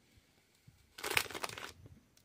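Plastic pretzel snack bag crinkling for under a second as a hand reaches in and takes out a pretzel, starting about a second in.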